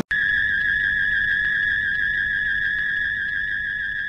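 A single steady, high-pitched electronic tone with a slight waver, starting suddenly and beginning to fade out near the end.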